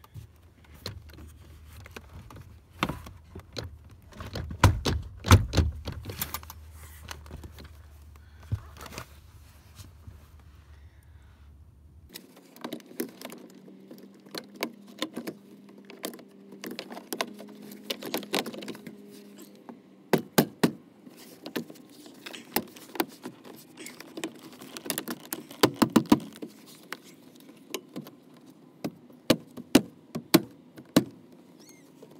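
Plastic door trim panel of a BMW E46 front door being pressed onto the door by hand: a long run of sharp clicks, snaps and knocks as its retaining clips seat, over a low hum that stops about halfway through.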